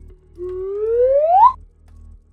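Logo sound effect: a single whistle-like tone glides steadily upward for about a second and cuts off suddenly. Quiet background music plays underneath.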